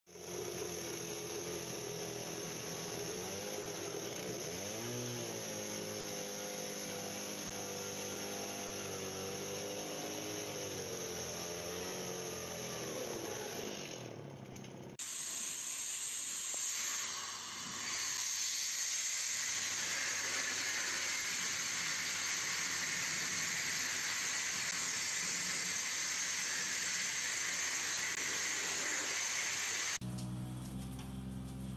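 A chainsaw-type masonry saw cutting into a brick wall, its motor note wavering up and down as it works under load. About halfway through it cuts off abruptly and is replaced by the steady hiss of a sandblaster blasting old timber roof beams.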